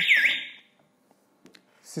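Ajax wireless alarm siren sounding a fast, repeating swept wail, about five sweeps a second, which stops about half a second in. The siren's tilt sensor (accelerometer) set it off when the siren was moved, and the alarm sounds only briefly. Near silence follows, with a faint click.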